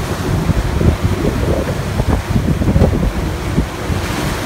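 Wind buffeting the microphone in gusts, over the rush of a moving boat's churning wake and a choppy sea.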